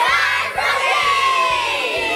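A group of children cheering and shouting together, many high voices at once, their pitches falling away in the second half.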